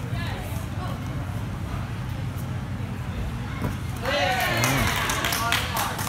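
Voices over a steady low hum; about four seconds in, a high-pitched voice cries out for a second or so, the loudest sound here, followed near the end by a few sharp knocks.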